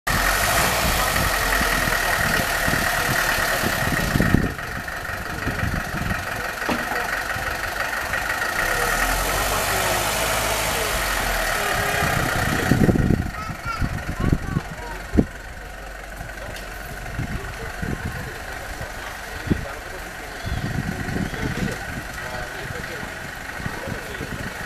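Mercedes-Benz W123 saloon's engine idling loudly and steadily; about thirteen seconds in it drops away as the car pulls off, leaving quieter street noise with a few sharp knocks and voices.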